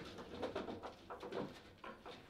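Foosball table in play: several light knocks as the ball is tapped between the plastic players and the rods slide and bump in the table.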